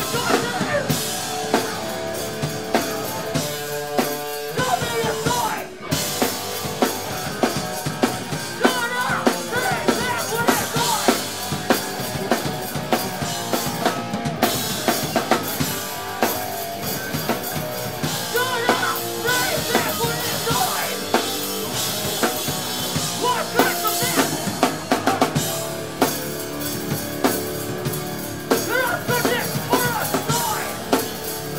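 Hardcore punk band playing live, with electric guitars, bass, a hard-hit drum kit and vocals. The music drops back briefly about six seconds in, then drives on.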